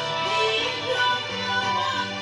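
Live keroncong ensemble playing: violin melody over plucked strings, small ukulele-like cak and cuk, guitars and cello, with keyboard.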